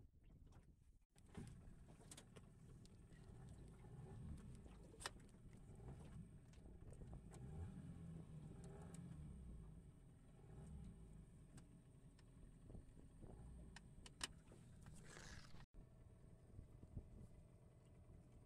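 Near silence: a faint low rumble with a few small clicks and knocks.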